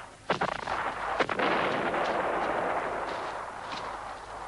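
Two sharp bangs about a second apart, then a dense rumbling noise that slowly fades over the next two seconds.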